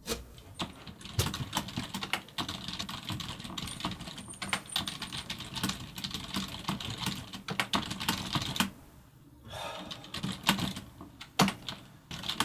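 Fast typing on a computer keyboard, a dense run of key clicks. It stops for about a second after eight and a half seconds, then starts again.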